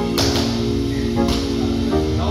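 Background music track with held notes, laid over the footage.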